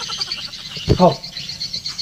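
A high, rapid chirping call in the background, pulsing about eight times a second without a break. A short thump comes about a second in.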